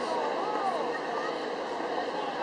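Indistinct voices of several people talking, over a steady background hum.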